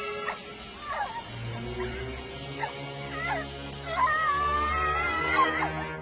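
A girl's high-pitched, wavering whimpers and cries of pain, with the longest, loudest cry from about four seconds in, over sustained dramatic background music.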